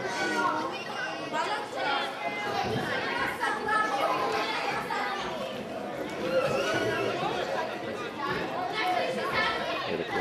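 Chatter of several people talking over one another, overlapping voices of spectators close to the touchline at a youth football match.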